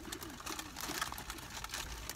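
Plastic snack-chip bags crinkling as they are handled and shaken, a scattered run of crackles, with a faint low murmur of a closed-mouth voice underneath.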